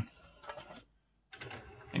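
Faint mechanical running of a Pioneer PD-F908 101-disc CD changer's mechanism as the single-loader access brings its disc carousel round, broken by a brief gap of silence near the middle.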